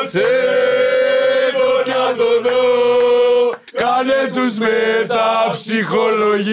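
A man singing loudly in a drawn-out, chant-like style: one long held note for about three and a half seconds, a brief break, then several shorter notes bending up and down.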